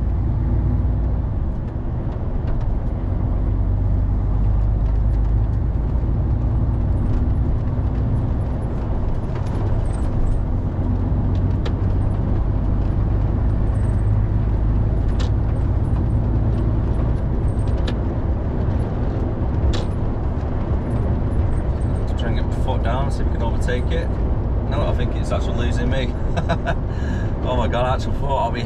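Steady low engine and road drone inside the cab of a MAN lorry cruising at motorway speed.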